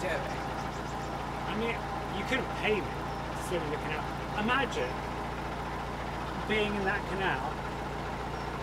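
Narrowboat's diesel engine running at a steady low drone while cruising, with faint voices coming and going over it.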